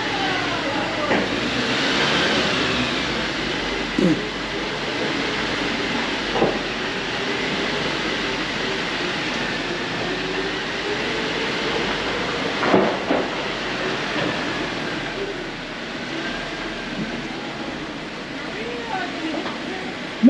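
Lifted Jeep Wrangler Rubicon crawling slowly through a rock mine tunnel: a steady engine drone and rumble of tyres on the rocky floor, closed in by the tunnel walls, with a few brief sharper sounds along the way.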